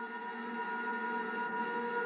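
A sustained ambient drone of several steady held tones over a soft hiss, slowly swelling in loudness.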